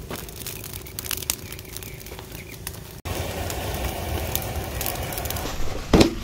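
Small fire of dry twigs crackling, with scattered sharp pops. About three seconds in it cuts abruptly to a louder steady rustling noise with handling knocks, the loudest near the end.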